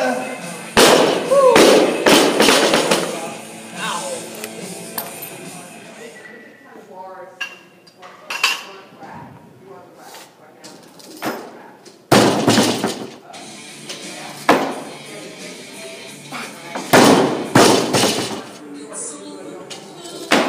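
Loaded barbell with rubber bumper plates dropped and crashing down, with metal clanging, several times over background music. A loud crash comes about a second in, then more around the middle and toward the end.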